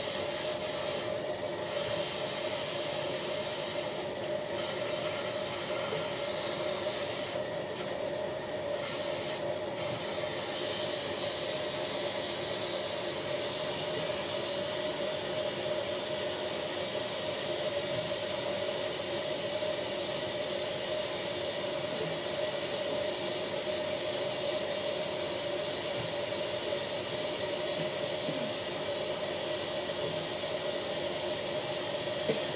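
Dental suction running with a steady hiss over a steady hum, with a few brief, sharper hisses in the first ten seconds.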